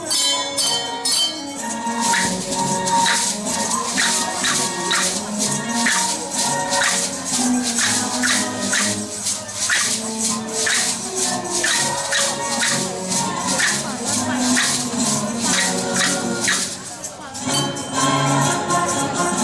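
Hand percussion ensemble playing to a steady beat: shakers rattling in time with wooden clappers and small cymbals, over a song with melody. The strokes thin briefly near the end.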